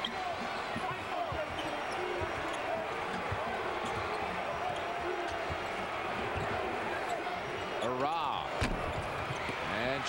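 Steady arena crowd noise under live basketball play, with a ball being dribbled on the hardwood court and short sneaker squeaks. A brief shout rises out of the crowd about eight seconds in.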